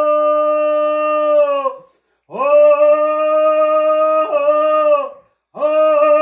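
A voice singing long, steady held notes, three of them about two seconds each with short breaks between, with no drum beats under them. It is the sung part of a hand-drum song.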